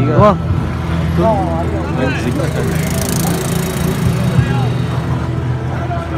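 Steady low engine hum of a motorbike idling, with voices talking faintly.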